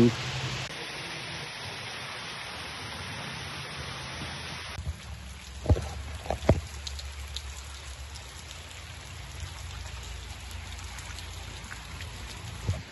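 Steady rushing of a small forest stream, with two sharp knocks a little past the middle.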